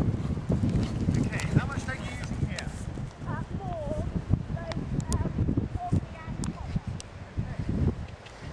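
A ridden horse's hoofbeats on a soft arena surface, a run of repeated dull thuds as it trots or canters around the school.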